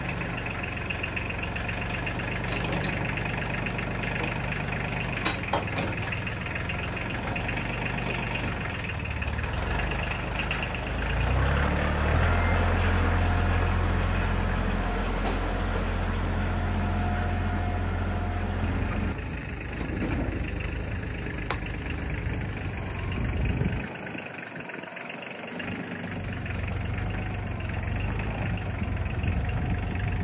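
Engine of a homemade log splitter running steadily at idle, then louder and deeper-toned for about seven seconds in the middle before settling back, with a brief drop in its lowest tones later on.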